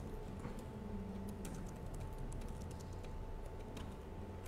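Typing on a computer keyboard: a faint, irregular run of key clicks as a prompt is typed.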